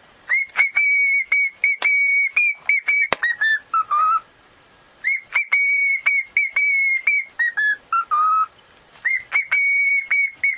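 Cockatiel whistling a tune: a run of short, clear high notes that ends in a few lower ones. The phrase is repeated over and over, with brief pauses between.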